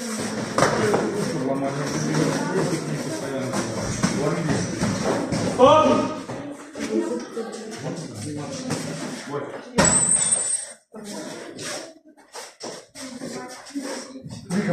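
Voices talking and calling in a large, echoing gym hall during kickboxing sparring. From about ten seconds in comes a run of short knocks and thuds as gloved strikes and kicks land.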